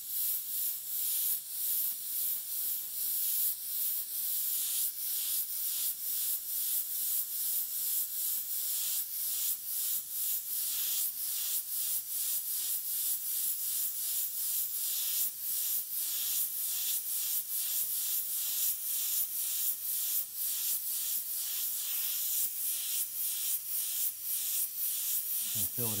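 Airbrush hissing in many short bursts, about one or two a second, as it sprays quick dagger strokes of paint.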